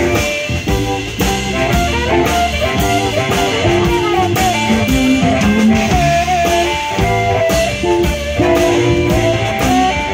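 Live blues band playing an instrumental passage: a harmonica held to a vocal microphone plays long, bending lead notes over electric guitar, electric bass and drum kit.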